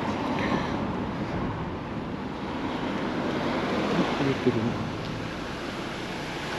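Street ambience: a steady rushing noise, with faint voices about four seconds in.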